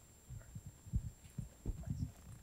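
Faint, irregular soft low thumps, about half a dozen over two seconds, picked up by the room microphone, with a thin steady high whine underneath.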